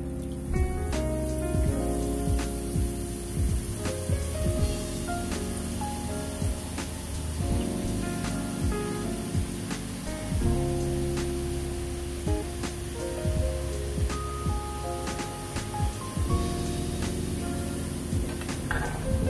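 Background instrumental music over a steady sizzle and crackle of gram-flour batter frying as it drops into hot oil, building into the boondi.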